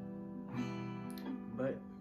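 An acoustic guitar chord strummed and left ringing, struck again about half a second in and sustaining.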